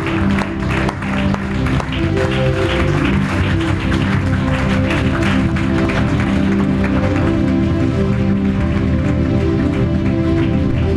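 Congregation applauding over music with steady held chords; the clapping dies away partway through while the music carries on.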